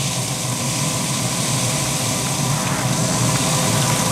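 Continuous-mist spray bottle hissing steadily as it sprays a fine mist over beef ribs, with a faint steady hum underneath.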